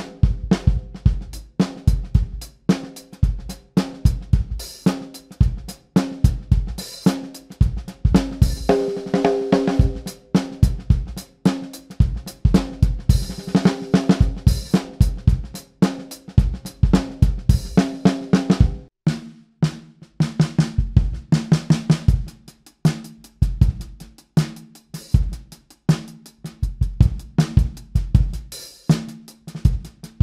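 A drum groove played on a snare drum fitted with a Luen LDH coated head, over kick drum and cymbals, demonstrating the head's timbre. About two-thirds of the way through, the drums' ringing pitch changes as another head and overlay combination is played.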